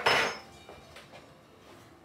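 A brief clatter of kitchenware, a utensil knocking against a dish or cup with a short ringing clink, in the first half-second, followed by faint small handling knocks.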